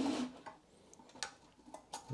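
Near quiet, with a few faint light clicks of a steel tape measure being handled against a table saw blade.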